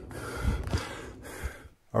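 A person drawing a sharp breath close to the microphone, with a few short low thumps.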